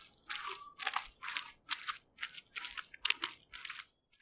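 Spoon stirring thick, lumpy dough in a mixing bowl: a run of short crunchy, scraping strokes, about two a second, that stops at the end.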